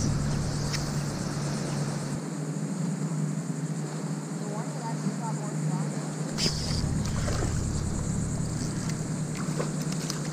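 A steady low drone, like an engine running, with faint voices about halfway through and a brief click a little after.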